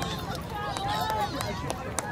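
Distant, overlapping voices of players and spectators calling out, indistinct, over a steady low rumble.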